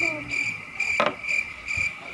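High insect chirping, a steady tone pulsing about four times a second, with one short click about a second in.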